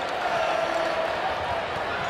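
Arena crowd noise with a basketball being dribbled on the hardwood court.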